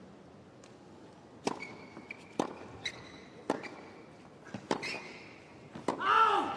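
Tennis rally on a hard court: a racket strikes the ball five times, about a second apart, with short sneaker squeaks on the court between shots. Before the first strike there is only a faint crowd hush.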